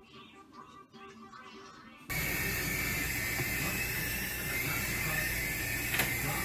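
Faint background music, then an abrupt cut about two seconds in to a much louder, steady hiss with a low hum and a thin high whine running under it.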